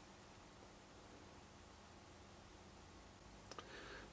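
Near silence: room tone, with a couple of faint clicks near the end.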